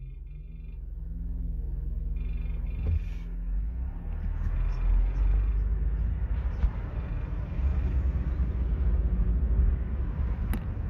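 Car driving, a steady low road and engine rumble that grows louder over the first couple of seconds.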